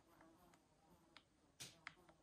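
Near silence: room tone with a few faint, short clicks in the second half, the loudest two close together near the end.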